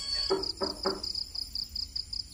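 Three quick knocks, about a third of a second apart, over a steady chorus of crickets chirping in rapid pulses.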